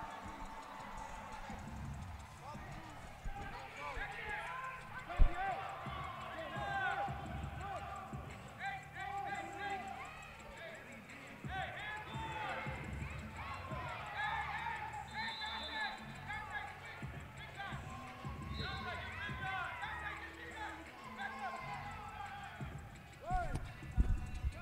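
Faint, echoing voices of players and spectators calling and chattering across a large indoor fieldhouse, over a steady low hum. A single thump comes about five seconds in.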